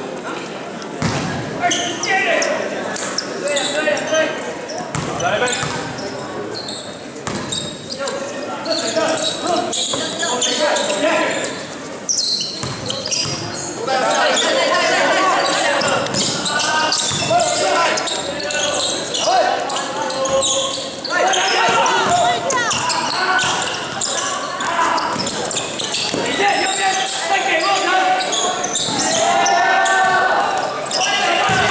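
Spectators and players shouting over one another in a large gym, with a basketball bouncing on the hardwood court. The voices grow louder about halfway through as play gets going.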